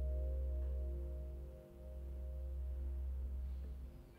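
The final chord of a jazz quartet of keyboard, electric guitar and upright bass, held and ringing as several steady tones over a low bass note. It slowly fades and stops about four seconds in, ending the tune.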